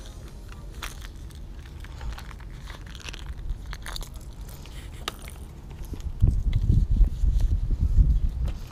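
Close-up handling of fishing tackle: small clicks and rattles of a crankbait and a clear plastic lure box. From about six seconds in come louder, irregular low rubbing and rumbling as a neoprene reel cover is handled over a baitcasting reel right by the microphone.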